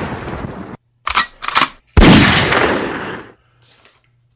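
Gunshot sound effects. A loud blast dies away and cuts off under a second in, two short sharp cracks follow, then a second loud blast about two seconds in rings away over about a second and a half.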